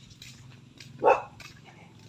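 A single short, sharp animal call about a second in, bark-like, over faint background.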